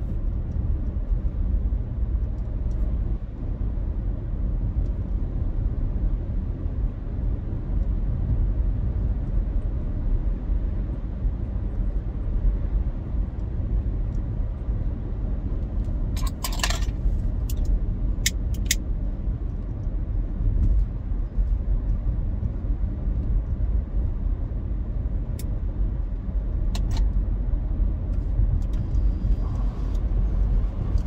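Steady low rumble of road and engine noise inside a moving car's cabin, with a few short clicks about halfway through.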